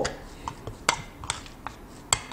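A metal spoon stirring minced beef and tofu in a ceramic bowl, with several light clicks of the spoon against the bowl.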